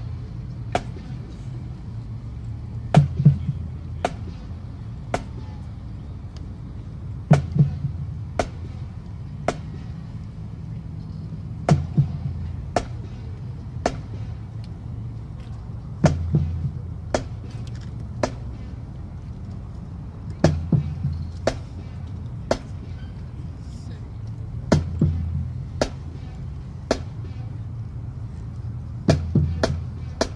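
Marching-band drumline keeping a steady tap, about one sharp click a second, with a heavier low drum hit roughly every fourth beat.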